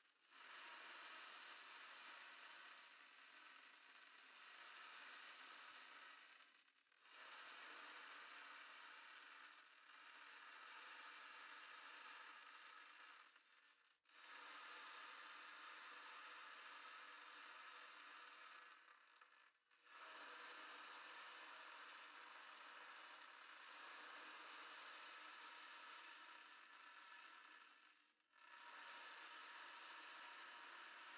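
Ocean drum tilted slowly back and forth, its beads rolling across the drumhead in a soft, wave-like hiss. The sound comes in long swells of five to eight seconds, each dropping away briefly as the drum is turned back the other way.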